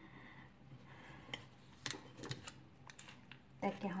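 A small knife working at the hard shell of a mature brown coconut: a quick, uneven run of light, sharp clicks as the blade taps and pries at the shell, starting about a second in and lasting about two seconds.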